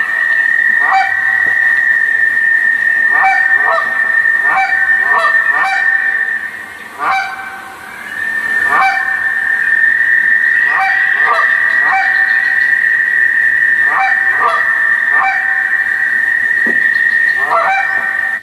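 Recorded Canada goose call honks played back: short clucks and honks with a sharp break in pitch, in irregular pairs and clusters, as if two geese were calling. A steady high-pitched tone runs under the honks and drops out briefly about seven seconds in.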